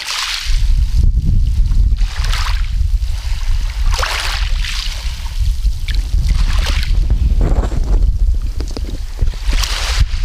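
Wind buffeting the microphone with a heavy, steady low rumble, while small waves wash over a pebble shore in a swish every second or two.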